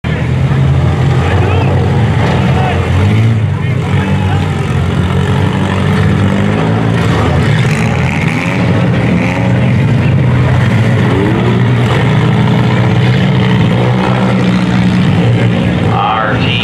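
Several modified front-wheel-drive cars' engines running hard together, revving up and down in overlapping rising and falling pitches.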